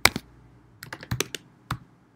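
Typing on a computer keyboard: a couple of quick keystrokes right at the start, then a run of several keystrokes about a second in and a single one near the end.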